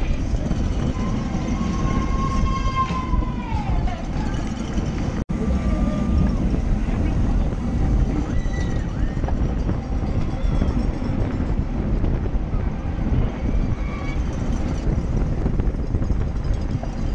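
Wind buffeting a bike-mounted camera's microphone while riding at race speed in a pack, with shouting voices from the roadside, one long drawn-out call about a second in that falls away. The sound cuts out for an instant about five seconds in.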